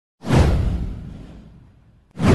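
An intro whoosh sound effect with a deep low boom. It comes in suddenly just after the start, sweeps downward in pitch and fades out over about a second and a half.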